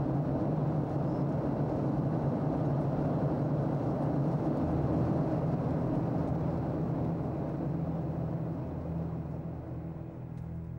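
Steady roar of an aircraft in flight, with a low hum running under it.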